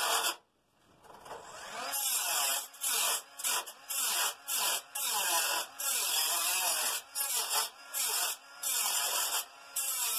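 Small angle grinder cutting through sheet steel along a scribed outline. It cuts out just after the start, builds back up over about a second, then cuts in short passes, the sound breaking off briefly many times as the disc bites and lifts.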